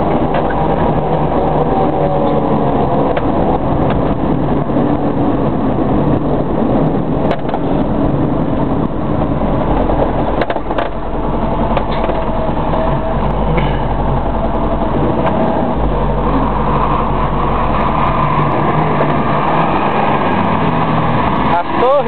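Inside a moving car: steady engine and road rumble, with indistinct voices over it.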